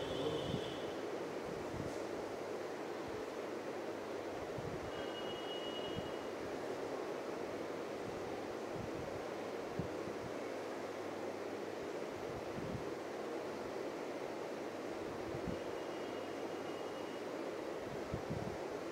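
Steady background hiss, with a marker pen writing on a whiteboard and two brief faint high squeaks.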